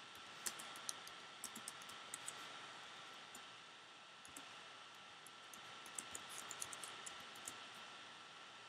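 Faint computer clicks, scattered in short clusters, over a steady hiss with a thin high steady tone.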